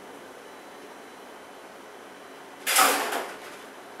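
Glass canning jar going down into a stockpot of boiling water: a steady faint hiss, then a brief loud scraping clatter about two and a half seconds in as the jar meets the pot.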